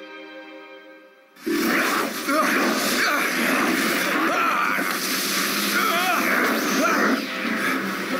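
Anime battle soundtrack: a held music chord fades out, then about a second and a half in a loud, dense mix of action music and sound effects cuts in suddenly.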